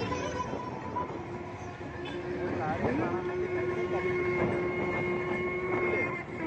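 A long steady horn-like tone that slides up into its note about three seconds in and holds to the end, over crowd voices and street noise; a higher held tone sounds briefly in the first second.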